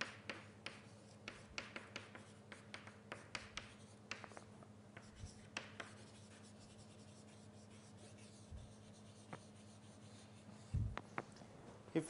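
Writing on a board: a quick, faint run of short taps and scratches for the first half, thinning to a few scattered ticks, with a low thump near the end.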